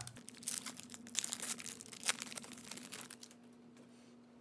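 Foil wrapper of a 2018 Topps Chrome baseball card pack crinkling and crackling as it is torn open by hand, dying away about three seconds in.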